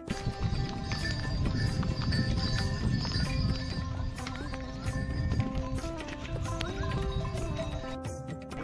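Background music playing over the clip-clop of laden pack mules' hooves on a stone path.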